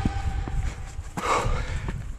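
Wind rumbling on the camera microphone on an exposed granite summit, with a few light footsteps on rock and a short rush of noise about a second in.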